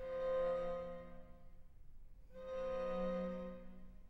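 String quartet of two violins, viola and cello playing two long held chords. Each chord swells and then fades: the first at the start, the second from about two seconds in.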